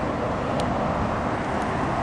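Steady rushing outdoor background noise with no distinct events, of the kind made by passing road traffic and wind on the microphone.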